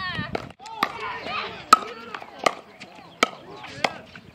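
Pickleball rally: sharp pops of paddles hitting the hollow plastic ball, about one every three-quarters of a second, starting about a second in.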